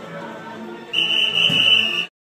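Sports whistle blown in one long, steady, shrill blast lasting about a second, starting halfway through. Faint background sound comes before it.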